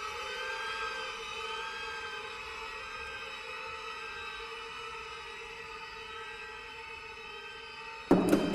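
Ambient drone of several held tones that waver slightly in pitch, easing a little quieter over time.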